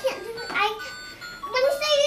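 A child's electronic toy playing a simple beeping tune in steady held notes, with a young girl's voice over it.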